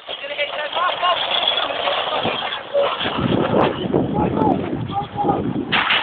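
Metal shopping cart pushed fast over asphalt, its wheels and wire basket rumbling and rattling steadily. A sudden loud burst of noise comes near the end.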